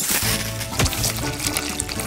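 A liquid gushing and splashing sound effect, starting suddenly, laid over background music.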